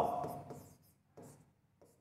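Faint scratching strokes of a stylus writing on an interactive smart-board screen, a few short strokes about a second in and near the end.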